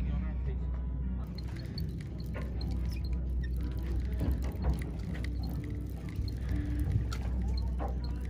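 A fishing boat's engine idling with a steady low hum, under faint voices and music.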